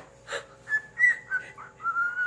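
Cockatiel whistling: a run of short chirping notes, then a longer held whistle near the end. There is a brief click about a third of a second in.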